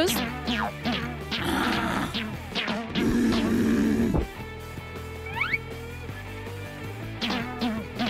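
Background music over a run of short, sharp hits in the first three seconds, from foam blaster darts striking a silicone pop-it held up as a shield. A second of loud, rough noise follows, then a short rising whistle-like effect about five seconds in.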